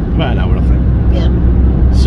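Steady low rumble of car road and engine noise heard inside the cabin while driving at motorway speed.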